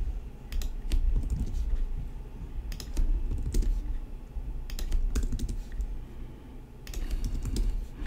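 Computer keyboard typing in short bursts of a few keystrokes, with pauses between the bursts.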